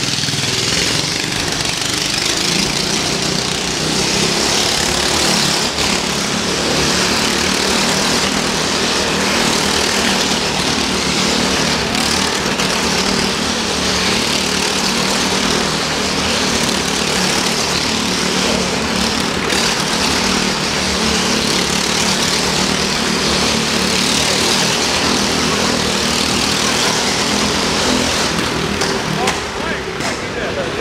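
Go-kart's Briggs & Stratton small engine running steadily at high revs as the kart circles the vertical wooden wall of the drome.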